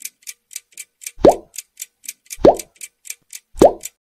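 Cartoon quiz sound effects: a clock ticking lightly and fast, about four ticks a second, over which come three loud plops about a second apart, each dropping quickly in pitch. The plops mark the correct answers being ticked off one by one.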